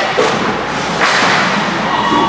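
Ice hockey play at close range: sharp cracks of sticks and puck striking, the loudest about a second in, followed by a short hiss, in an echoing rink.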